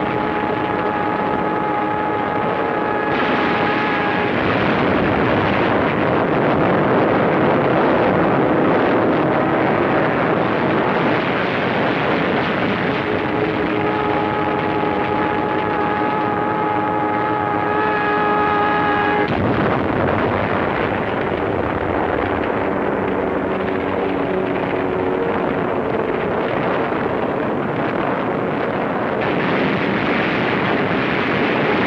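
Wartime film battle soundtrack: a dense, continuous roar of attacking aircraft and anti-aircraft fire. Steady held tones sound over it twice, the second time cutting off sharply.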